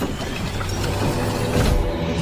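A motorboat engine running steadily: a cartoon sound effect.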